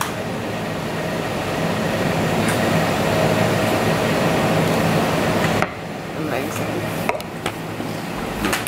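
Café espresso machine running with a steady hiss that cuts off suddenly about five and a half seconds in, over background café chatter.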